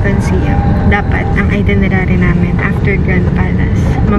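Steady low rumble inside a car's cabin, with people talking over it.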